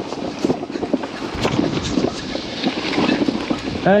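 Titanium adventure bike rolling fast down a rough gravel track: tyres crunching over loose stones, with many small clicks and knocks from the gravel and the loaded bike.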